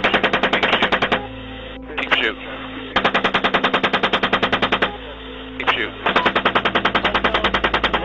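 AH-64 Apache's 30 mm chain gun firing in three long bursts of about ten rounds a second, heard over the helicopter's cockpit and radio recording, with a steady low hum underneath.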